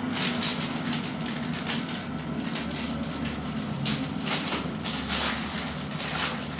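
Paper wrapping and tissue rustling and crinkling in quick, irregular bursts as they are handled and torn open, over a steady low hum.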